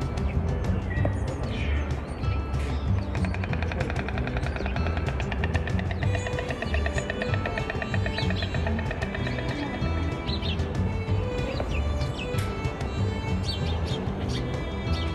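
White stork clattering its bill: a fast, even wooden rattle lasting about four seconds, starting about three seconds in. Background music with a steady bass runs underneath.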